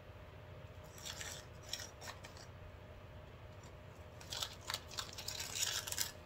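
Wooden craft stick scraping thick, sand-filled epoxy resin out of a plastic cup, in short gritty scrapes: a spell in the first two seconds and another from about four seconds on.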